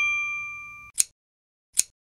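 A bright bell-like ding sound effect rings out and fades over about a second, followed by two sharp mouse-click sound effects a little under a second apart, as an animated subscribe button is pressed.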